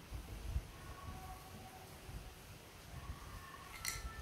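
Quiet room with a faint low rumble and a few small clicks of hard plastic toy pieces being handled and set down, the sharpest just before the end.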